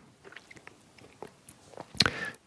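Faint mouth clicks and lip noises from a man pausing between sentences, scattered over quiet room tone.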